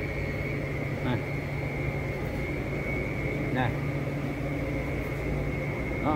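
Steady machine hum with a constant high-pitched whine over it, with two faint brief sounds, about a second in and about halfway through.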